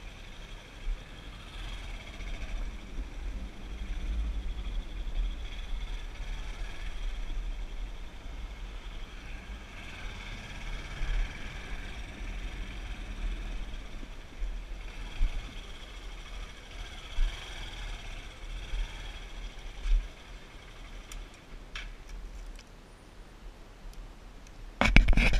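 Motorcycle being ridden along a street: a low engine and road noise under a fluctuating wind rumble on the microphone, with a couple of sharp clicks near the end.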